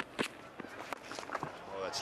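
Cricket bat striking the ball: one sharp crack a fraction of a second in, just after a smaller knock, over steady background ground noise.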